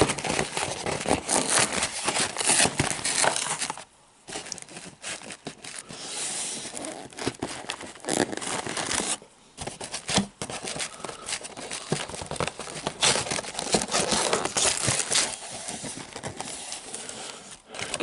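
Paperboard takeout box and its paper liner handled close to the microphone: the lid flapped open and paper crinkled and torn in dense crackling bursts, with brief pauses about four and nine seconds in.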